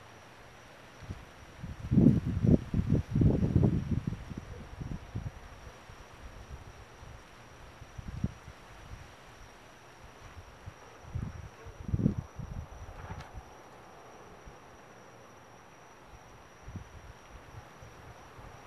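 Irregular low rumbling buffets on the camera's built-in microphone, strongest about two to four seconds in and again around twelve seconds. A faint, steady high-pitched tone runs beneath them.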